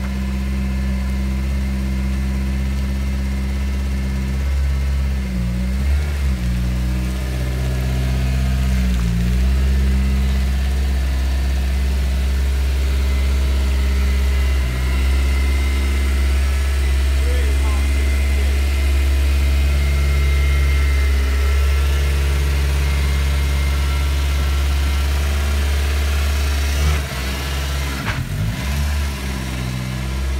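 Caterham Seven's engine idling steadily through its side exhaust. Its note wavers briefly a couple of times, and is unsteady for a moment near the end.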